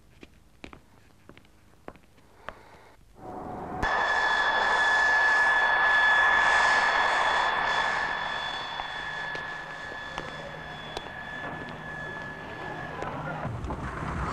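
Aircraft engine noise: a steady high whine over a rushing roar. It comes in suddenly a few seconds in, swells, then slowly fades away, with the whine cutting off shortly before the end. The first seconds are quiet apart from a few faint clicks.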